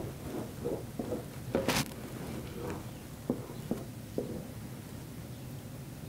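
Wooden spoon stirring thick melted herbal soap in an enamel basin, with a few light knocks and one sharper knock a little under two seconds in, over a low steady hum.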